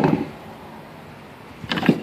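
A short pause in a man's talk: faint steady background noise with no distinct events, with the end of one phrase at the start and the next phrase beginning near the end.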